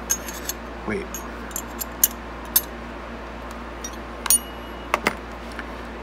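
Scattered light metallic clicks and clinks of a stainless steel survival card and its push dagger knocking together as they are handled and fitted into each other. One clink about four seconds in rings briefly.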